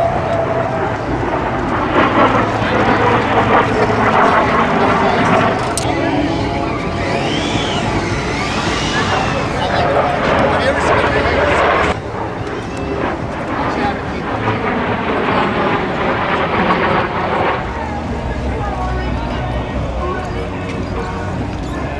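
Indistinct crowd voices mixed with steady low engine noise. The sound changes abruptly about twelve seconds in.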